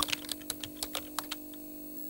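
Computer keyboard typing: quick, irregular keystroke clicks over a steady low electrical hum, the sound effect of text being typed onto a screen.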